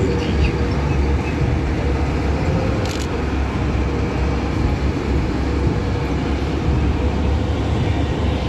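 Engines of eight-wheeled armoured vehicles driving past in a column: a steady, deep rumble with a faint steady whine. A brief click about three seconds in.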